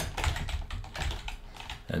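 Typing on a computer keyboard: a quick run of separate keystrokes.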